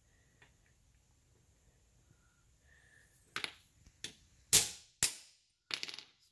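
Steel parts of a golf cart coil-over shock knocking and clicking as a socket and spacer are worked off it: about five short sharp metal knocks in the second half, the loudest a little past the middle.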